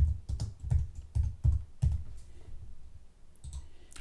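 Typing on a computer keyboard: a run of keystrokes, about three a second, thinning out after about two seconds, while a layer name is entered.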